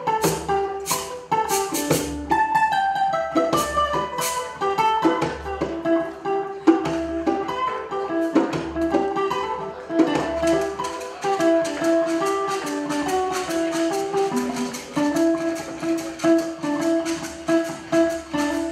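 Live acoustic guitar picking a melody, accompanied by hand percussion keeping a steady rhythm that grows denser and more even in the second half.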